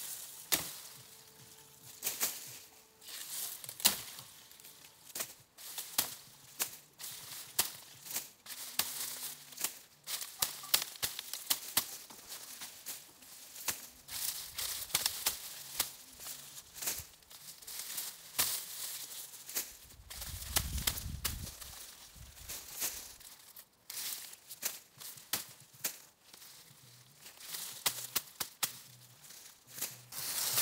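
Machete chopping through dry banagrass canes, with dry leaves being torn away and rustling, heard as irregular sharp cracks and snaps between stretches of rustling.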